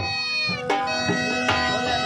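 Bagpipe band music: a steady drone under a gliding melody, with drum beats struck every half second or so.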